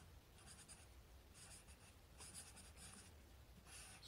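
Faint scratching of a Sharpie fine-point marker writing a word on a white surface, in several short strokes.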